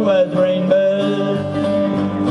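Live country music on acoustic guitars, strumming and picking an instrumental passage with a steady melody line over the chords.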